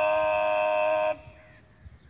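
A bugle holding one long steady note that cuts off about a second in, part of a bugle call.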